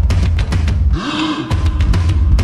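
Background video-game music with a fast, regular drum beat and heavy bass. About halfway through, the drums and bass drop out briefly under a rising, then held, tone and a hiss before the beat returns.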